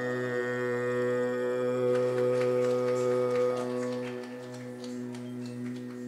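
A steady held drone note with its overtones, the closing sound of a Carnatic music accompaniment, growing quieter in the last two seconds. From about two seconds in, scattered light clicks and jingles sound over it.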